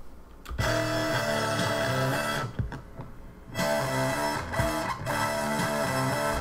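Guitar-like tone played back through the DAW, most likely the sound just rendered from TurboSynth, the software modular synthesizer: a short phrase of changing notes starting about half a second in, a pause of about a second, then the phrase again.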